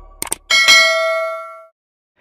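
Two quick clicks, then a bright bell ding that rings on and fades away within about a second: the click-and-notification-bell sound effect of a subscribe animation.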